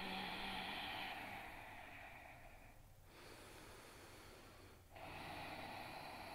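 A person breathing deeply and audibly: a long breath out, a quieter breath in from about three seconds in, then another stronger breath from about five seconds in.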